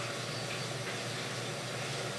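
Steady hiss with a low hum underneath, holding even throughout, with no distinct clicks or knocks.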